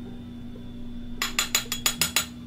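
A small hinged eyeshadow compact with a mirrored lid is handled and opened: a quick run of about seven sharp clicks and clinks in the second half, over a faint steady hum.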